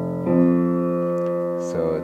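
Upright acoustic piano: an F rings on, then the F an octave higher is struck about a quarter of a second in and rings steadily. Another note change comes near the end.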